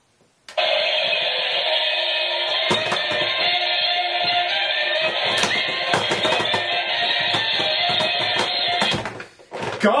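Lalaloopsy alarm clock radio's alarm going off through its small speaker: an ear-splitting, tinny sound that starts suddenly about half a second in, holds steady, and cuts off abruptly about nine seconds in when its button is pressed.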